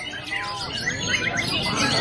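Several caged white-rumped shamas (murai batu) singing at once in competition: a dense tangle of overlapping chirps, whistles and rapid trills, with a fast repeated trill about a second in.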